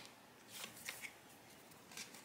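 Faint handling of a deck of tarot cards: a soft shuffle rustle about half a second in and a couple of light card clicks.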